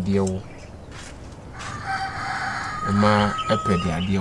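A rooster crowing once, a single crow of about two seconds that starts about one and a half seconds in and ends on a held note, while a man's voice talks briefly at the start and over the end of the crow.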